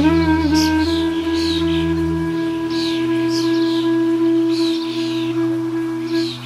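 Flute holding one long, steady note in relaxation music, over a low sustained drone that drops in pitch about two seconds in. Short bird-like chirps sound high above it.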